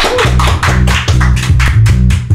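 Small acoustic band playing: acoustic guitars strummed in a quick, even rhythm, with electric bass notes coming in a moment in.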